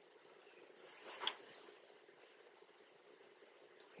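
Near-silent room tone, with one faint, brief soft hiss about a second in.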